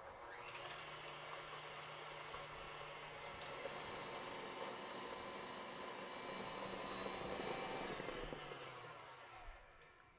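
Electric stand mixer running steadily at high speed, beating eggs and sugar toward the ribbon stage for a sponge cake; the faint motor hum fades out near the end.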